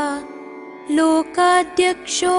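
Sanskrit devotional chant of Lord Ayyappa's names, sung over a steady held drone. One line ends just after the start, the drone carries on alone for a moment, and the singing resumes about a second in.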